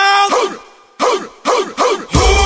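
A solo voice singing the opening of a pop song in short phrases that slide down in pitch, with no drums or bass, and a brief gap about halfway through.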